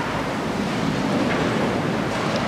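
Steady rushing background noise of the church, with a few faint knocks and rustles as clergy move about the altar.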